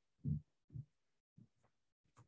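Two soft, low thumps about half a second apart, then two fainter ones, against dead silence on a video-call audio line.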